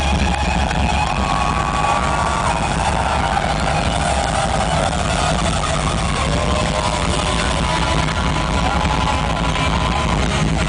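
Live rock band heard from within the crowd: an electric guitar holds long lead notes, some of them bent in pitch, over a loud, boomy low end.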